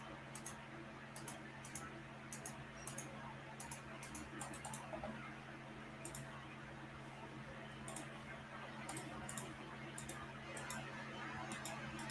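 Faint, irregular clicks of a computer mouse placing points to draw a shape in embroidery digitizing software, over a low steady hum.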